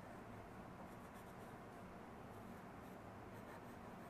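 Faint scratching of a wooden pencil drawing short strokes on paper, over a low steady room hiss.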